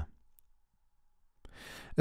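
Near silence for about a second, then a soft in-breath by a person in the last half second.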